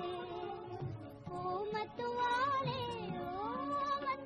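Old Hindi film song: a female voice sings a melody with gliding, ornamented notes over orchestral accompaniment and a light drum beat.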